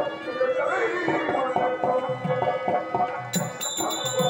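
Stage accompaniment for Tamil folk drama: a harmonium holding sustained notes while a hand drum keeps a steady beat. A man's voice comes through the microphone in the first part, and a little after three seconds in, small hand cymbals join with bright, ringing, regular strikes.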